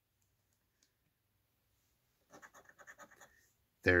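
A coin scraping the latex coating off a scratch-off lottery ticket in a quick run of short strokes, starting about two seconds in and lasting about a second.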